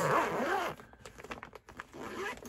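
Plastic zip-seal bag being pulled open by hand: the seal is loudest in the first half-second, followed by a few faint clicks and crinkles of the plastic.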